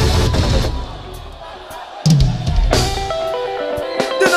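Live band music with drum kit: the band cuts out a little under a second in, leaving a quieter gap, then crashes back in with a heavy bass drum hit about two seconds in.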